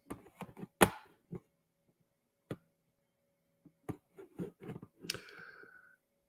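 Scattered sharp clicks and taps from a computer or phone being worked on, a handful spread over the seconds with a quick cluster near the end. The host is handling the device while trying to restore a dropped call microphone.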